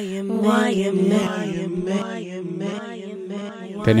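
A held, chant-like vocal note on one low pitch with its vowel colour slowly shifting, playing through Ableton Live's Echo delay effect.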